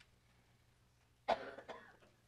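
A person coughs once, briefly, just over a second in, in an otherwise quiet room.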